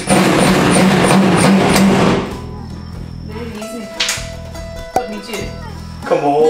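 Cordless power driver running for about two seconds as it drives a screw into a wooden floor-frame batten, then stopping. Plucked-string background music plays under it and carries on alone after it, with one sharp click near the end.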